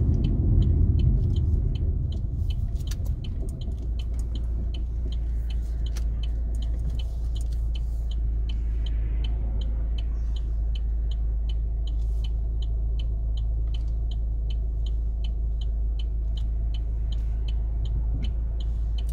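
Car turn signal ticking evenly, about twice a second, over the low rumble of the car's engine and road noise heard from inside the cabin. The rumble is heavier for the first few seconds, then settles to a steady low hum.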